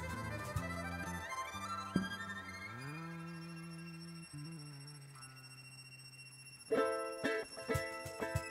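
Live folk-rock band: violin and bass guitar hold long notes that slide upward together and slowly fade. About seven seconds in, the full band comes back in loud, with strummed acoustic guitar and cajon hits.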